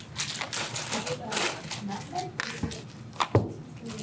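Low, untranscribed talk in a small room, with scattered clicks and rustling handling noises and one sharp knock about three seconds in.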